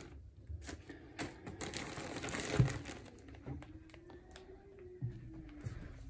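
Clear plastic zip bags holding folded linens crinkling as they are handled, in irregular bursts that are loudest about two seconds in.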